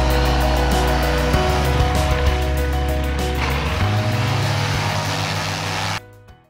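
Background music over the propeller engine of a light high-wing bush plane flying low past, its noise growing stronger toward the end and cutting off suddenly.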